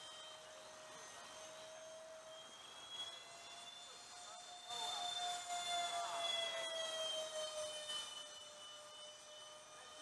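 Electric ducted fans of a Dynam Me 262 model jet whining as it flies by, a steady faint tone that rises slightly in pitch and grows louder in the middle as the jet passes closest, then falls back.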